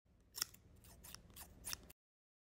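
Small purple-handled scissors snipping through a doll's hair in a quick run of snips, the loudest about half a second in and near the end.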